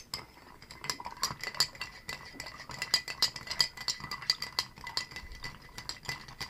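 A long bar spoon stirring spirits over ice in a glass mixing glass: quick, uneven clinks of ice and spoon against the glass.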